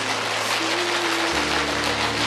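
An audience applauding with steady hand-clapping, over soft background music with a sustained bass note that enters about halfway through.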